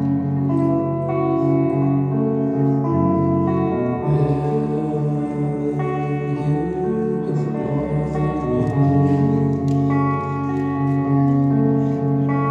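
Live acoustic band music led by guitar, with long held melody notes over it that change every second or two.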